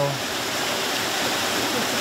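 Small cascading falls on a woodland stream, rushing steadily; the stream is running unusually high. A voice trails off right at the start.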